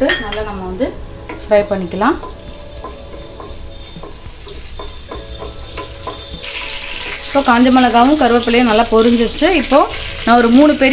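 Dried red chillies, curry leaves and seeds sizzling in hot oil in a pan, stirred with a wooden spatula. The sizzle grows louder about seven seconds in.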